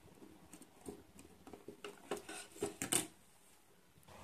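Faint handling noise of a 1N4007 diode being fitted into a veroboard: small clicks and taps as the wire leads go through the holes and the board is turned in the hands. The taps come in a loose string from about half a second in, the loudest near three seconds in.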